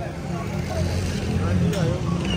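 Street traffic noise: a steady low rumble of motor vehicles, with people talking in the background.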